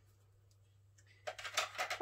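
Near silence: quiet room tone with a faint steady low hum, then a woman starts speaking in the last part.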